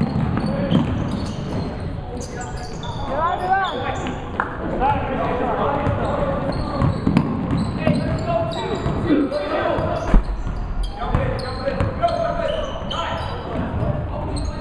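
Basketball game sounds in a large gym: a basketball bouncing on the hardwood floor among scattered sharp knocks and clicks, with indistinct shouting from players and spectators echoing in the hall.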